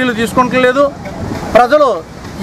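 Only speech: a man talking.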